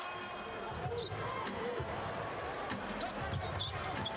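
Basketball being dribbled on a hardwood court, short bounces over a steady arena background noise.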